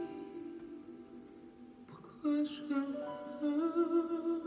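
A man singing a slow ballad over soft instrumental backing: a held note fades away, then a new phrase begins about two seconds in and ends on a long note with vibrato.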